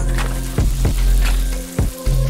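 Hot oil in a deep fryer sizzling around a breadcrumb-coated tempura sushi roll in a wire basket, a steady hiss under background music.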